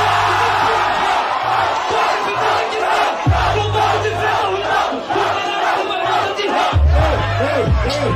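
Rap-battle crowd yelling and cheering over a hip-hop beat with deep bass notes. The crowd noise is heaviest in the first few seconds, and the bass grows stronger in the second half.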